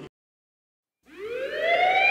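A siren winding up, starting about a second in after a break of silence and rising steadily in pitch.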